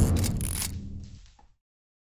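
Logo sting sound effect: a low, noisy swell with a crackling hiss over it, dying away about a second and a half in.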